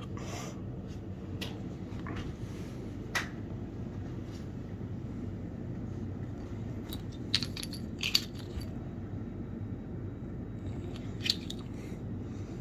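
Quiet room tone with a steady low hum, broken by a few faint, irregular clicks and taps, two of them close together about seven to eight seconds in and another near the end.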